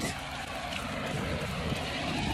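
Steady rushing noise of wind and falling sleet on a phone microphone carried on a run, with faint low thumps under it.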